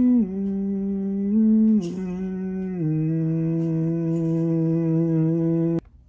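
A man humming a low, prayer-like chant: one long hum held on a few notes that step downward, cutting off suddenly near the end.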